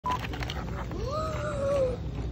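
A young child's drawn-out vocal sound, not a word: it rises in pitch and then holds for about a second, beginning about a second in. Under it is a low steady hum of room noise, with plastic packaging crinkling in the first half-second.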